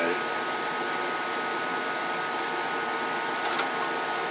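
Steady whir of a small electric cooling fan, with a faint steady whine in it. A couple of soft clicks come about three and a half seconds in.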